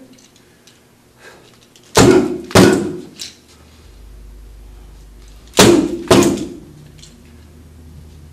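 Nunchaku striking hand-held padded strike pads: two sharp smacks about half a second apart, then another pair about three and a half seconds later.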